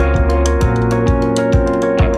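Instrumental section of a funk/neo-soul rock band track: held keyboard chords over a bass line, with the drummer keeping a steady cymbal pattern and no vocals.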